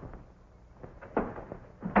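A single short knock, as on a wooden door, about a second in, over the faint hum and hiss of an old film soundtrack.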